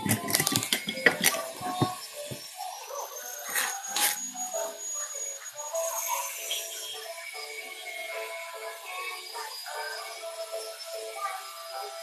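Sharp clinks and knocks of a glass clip-top jar and its lid being handled in the first two seconds, then background music with a melody.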